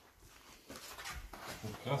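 Faint handling noise from a handheld camera being swung about: soft rustles and low bumps, followed near the end by a man's short spoken exclamation.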